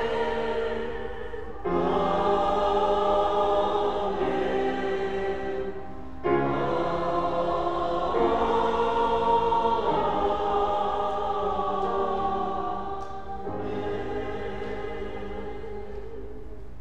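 A choir singing a slow four-part 'Amen' in long held chords. The last chord comes softer and fades toward the end.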